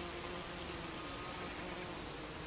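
Leafcutter bee's wings buzzing as it hovers at a nest hole in a log bee hotel: a steady low hum that wavers slightly in pitch.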